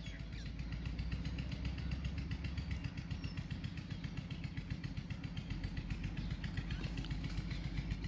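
A faint, steady background drone with rapid, even pulsing, like a small engine running at a constant speed.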